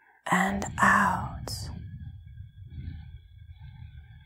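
A woman's soft voice gives a short breathing cue about half a second in, then a long, slow exhale of breath follows and fades away.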